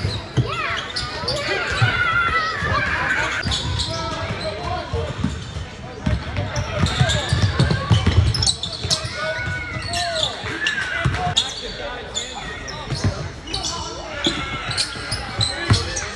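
Basketball dribbled on a gym floor during live play, with repeated low thuds of the ball. Players' voices and shouts run alongside.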